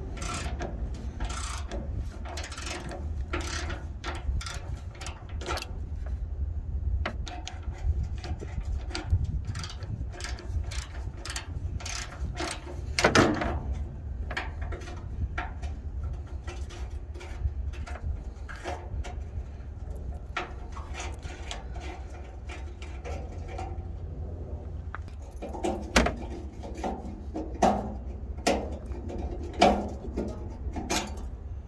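Socket ratchet clicking in short irregular runs as it turns the DOC outlet temperature sensor on a truck's exhaust aftertreatment canister, over a steady low rumble. There is a louder clatter of metal tools about a third of the way in and again near the end.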